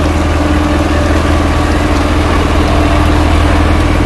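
An engine idling: a loud, steady low drone with no change in speed.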